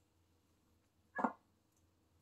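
A kitten gives one short mew about a second in.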